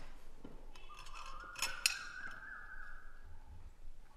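Serving spoon and fork clinking against china plates and dishes, with two sharper clinks about a second and a half in. A faint high tone climbs in small steps behind them.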